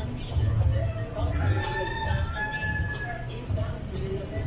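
A rooster crowing once, one long call starting about a second and a half in, over a steady low rumble of street background.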